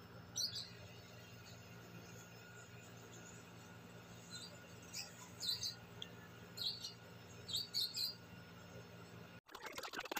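A bird chirping in short, scattered high calls, faint over a low steady background hum. Near the end the sound drops out briefly, then a louder noise of rapid clicks begins.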